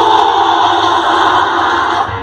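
A loud, dense wall of many voices at once over music played through a concert sound system. It starts suddenly after a brief dip.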